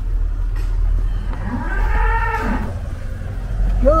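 A cow mooing once, a single call of about a second that rises and falls in pitch, over a steady low rumble.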